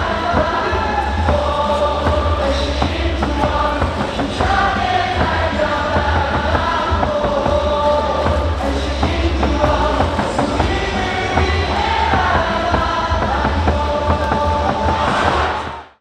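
Korean baseball crowd singing a batter's cheer song in unison over amplified backing music with a steady bass beat. The sound fades out near the end.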